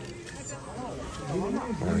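A person's voice, drawn out and gliding up and down in pitch in the second half, over low shop background noise.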